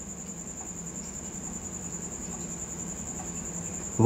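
A steady high-pitched whine over a faint low hum, unchanging throughout.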